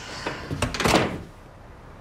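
A front door closing: a brief rush of air, then a couple of knocks just under a second in as it shuts.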